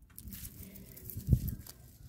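Rustling and bumping from handling the recording device among watermelon vines and straw mulch, with one louder thump about a second and a half in.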